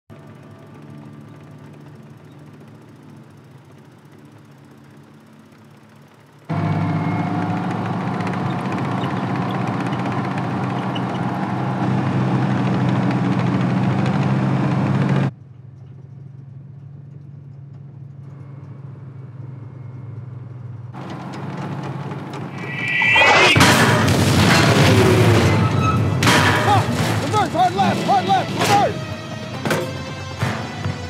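Film sound of a column of Sherman tanks on the move. A steady low engine rumble jumps sharply louder for about nine seconds, then drops back and builds again. A loud explosion comes about 23 seconds in, followed by a rapid run of sharp cracks and impacts.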